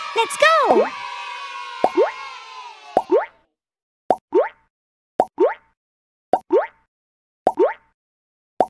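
Cartoon pop sound effects of pop-it fidget-toy bubbles being pressed: a swooping, boing-like jump glide at the start, then about five short rising 'plop' pops, each paired with a click, about one a second with silence between.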